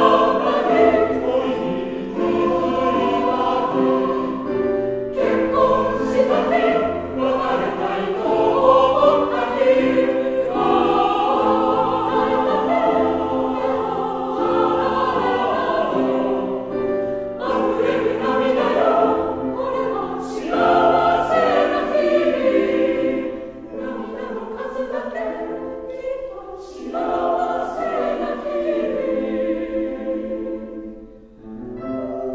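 Mixed choir of women's and men's voices singing a Japanese pop song in a choral arrangement, with piano accompaniment. The singing grows softer for the last several seconds.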